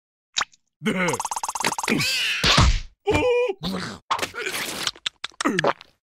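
Cartoon character voice effects: wordless groans and yelps, with a fast buzzing rattle about a second in and a loud whack-like hit a little after two seconds in, then a few short clicks near the end.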